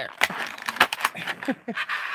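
A clear plastic packaging tray crackling and clicking in a rapid series of sharp snaps as a makeup palette is pried out of it by hand.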